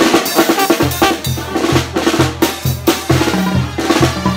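Banda percussion: tarola snare strokes and rolls with tambora bass drum and cymbal hits in a fast steady rhythm. From about a second in, a low bass line joins under the drums.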